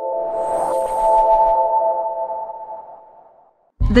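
Intro logo sting: a held synthesizer chord with a brief whoosh about half a second in, slowly fading out over about three seconds.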